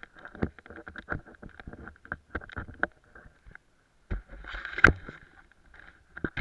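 Irregular clicks, knocks and scraping of ski gear close to a helmet-mounted camera, with a rustling stretch and the loudest knock a little before five seconds in.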